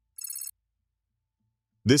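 A short electronic trilling ring used as a transition sound effect, a rapid high-pitched pulsing lasting about a third of a second.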